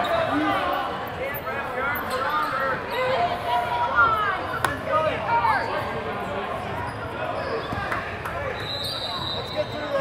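Spectators' voices and calls filling a large gymnasium, with a basketball bouncing on the hardwood court and a few sharp knocks. A thin, steady high tone starts near the end.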